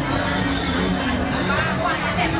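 Busy market hubbub: several people talking at once, unclear words, with a voice rising in pitch near the end.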